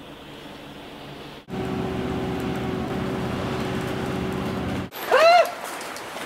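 City bus engine running, heard from inside the cabin as a low steady hum. After a cut about a second and a half in, a louder steady engine drone with a held tone follows. It cuts off about five seconds in, and a short, loud, high-pitched call rises and falls in pitch.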